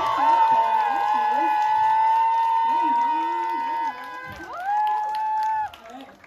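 Concert audience cheering with long, drawn-out high screams, several voices at once. One yell is held until almost four seconds in, and a second rises about half a second later and is held for about a second.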